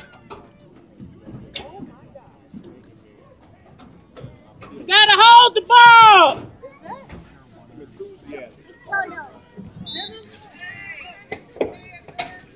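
Faint voices in the background, then a loud, high-pitched voice calls out twice in quick succession about five seconds in, each call rising and then falling in pitch.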